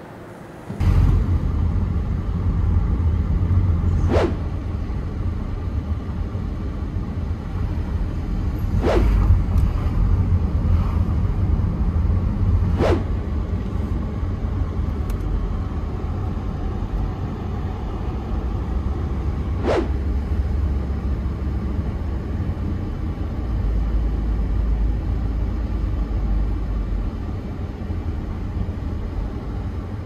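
Steady low rumble of a car's engine and tyres heard from inside the cabin while driving, with a few faint clicks.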